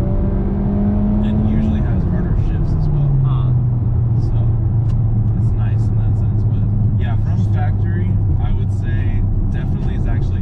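2019 Toyota Corolla hatchback's four-cylinder engine drones through its cat-back exhaust, heard from inside the cabin. Its pitch drops about two to three seconds in, then holds low and steady.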